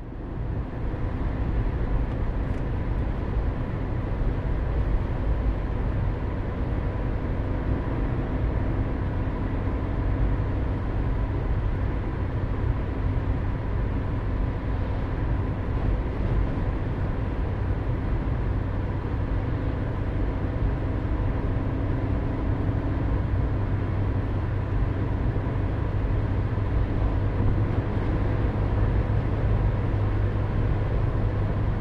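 A car driving, heard from inside the cabin: steady engine and tyre noise on a wet road, mostly low rumble with a faint steady hum.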